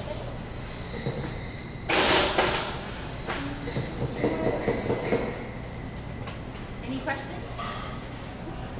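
Indistinct talk in a large room, with a short, loud burst of noise about two seconds in.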